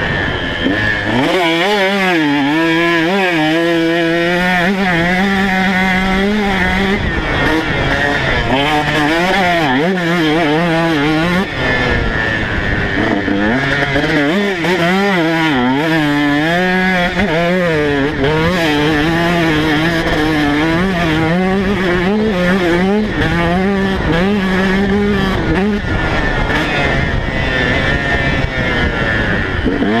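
KTM 150 SX single-cylinder two-stroke motocross engine at full riding, its pitch rising and falling over and over as the throttle is opened and closed and the bike shifts through the gears. Heard close up from a camera mounted on the bike.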